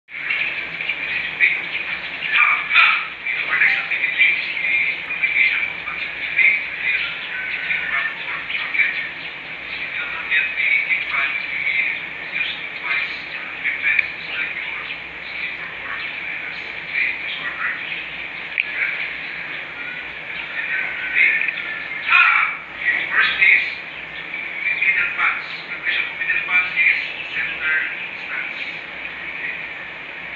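Birds chirping and squawking in a dense, continuous chatter of short, high calls.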